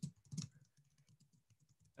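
Faint computer-keyboard typing: a few key clicks in the first half second, then only very faint ticks.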